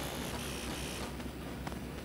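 Low, steady background hiss and hum of the recording, with one faint tick near the end.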